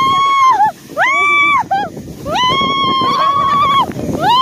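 People screaming with excitement as a toboggan slides down a snowy hill. There are three long high-pitched screams, each rising, holding and dropping off, with a short yelp between the second and third, over the rushing noise of the sled on snow.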